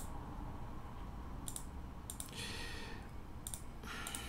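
Computer mouse button clicking: about four short, sharp clicks, each a quick press-and-release pair, spread over a few seconds as line segments are placed in a CAD sketch, with a brief soft hiss in the middle.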